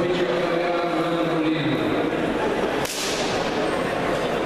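Voices of a crowd and officials echoing in a sports hall, with a long held call through the first half, then a single sharp crack a little under three seconds in.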